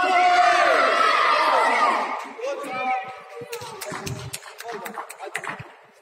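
Spectators shouting and cheering at a youth indoor football match. Several high voices overlap loudly for about two seconds and then die away, followed by a run of sharp claps in the hall.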